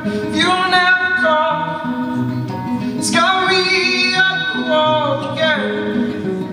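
A man singing live to his own acoustic guitar, holding long notes in two sung phrases with slides between the notes, over steady strummed chords.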